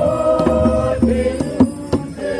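A procession crowd singing a hymn together in long held notes, with hand percussion (a drum and jingles or rattles) striking in time.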